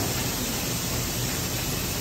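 Bottling line with an automatic inline spindle capper running, giving a steady, even hiss-like machine noise with no distinct knocks or rhythm.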